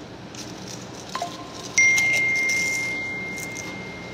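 Two chime-like tones: a short lower one about a second in, then a higher, louder one that starts sharply and rings on, slowly fading.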